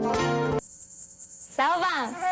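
Music with sustained chords stops abruptly about half a second in and gives way to a high, rapidly pulsing insect chirping. A voice starts near the end.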